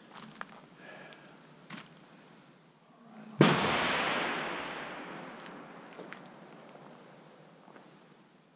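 A single 6.5 Creedmoor rifle shot about three and a half seconds in, its report echoing and dying away slowly over the next few seconds.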